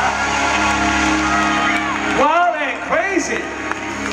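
A live band holding a sustained chord that cuts off about two seconds in, then whoops and cheering from the audience.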